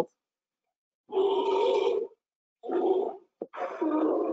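Polar bear cubs crying to be fed, played back from a video: three hoarse calls, each a second or less, the first about a second in and the last near the end.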